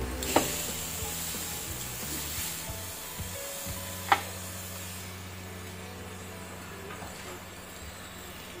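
Squid sizzling on a buttered ridged grill pan, a steady hiss, with two sharp clicks: one near the start and one about four seconds in as metal tongs touch the pan. Soft background music plays underneath.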